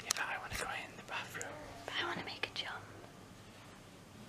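A man whispering close to the microphone for about the first three seconds, then a quieter stretch.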